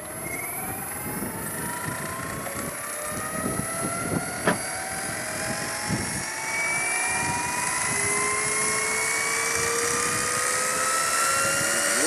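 Electric RC helicopter spooling up on its pad: a whine from the motor and gears rising steadily in pitch as the main and tail rotors gain speed, getting louder as it goes. A couple of short knocks come around four and six seconds in.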